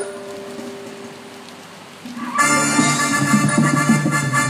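Live stage music: a struck note at the start rings and fades away, then loud music comes in suddenly about two seconds in.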